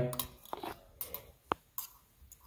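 Thin hooked wire scraping and ticking against a sink drain's metal body and stopper housing as it rakes hair and soap scum out of a slow-running drain: a few faint, irregular ticks, with one sharper click about a second and a half in.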